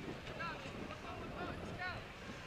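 Wind rushing over the microphone of a moving bicycle, with a person's voice calling out twice in short calls, about half a second in and near the end.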